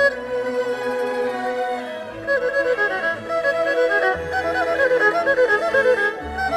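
Solo erhu with Chinese orchestra accompaniment: a held low note after a downward slide, then quick running passages from about two seconds in. Low orchestral notes come in underneath about four seconds in.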